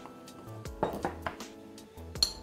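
Background music, with a few light knocks and clinks about a second in as a ceramic sugar jar with a wooden lid is handled and set down on a wooden counter.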